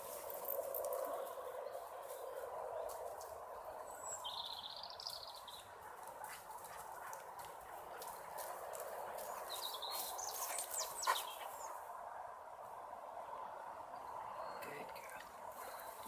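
Outdoor ambience: a steady background hum with a few bird chirps, one about four seconds in and more near ten seconds.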